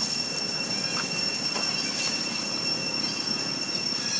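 Insects droning steadily at two high pitches over a rough, noisy background, with a faint short squeak about a second in.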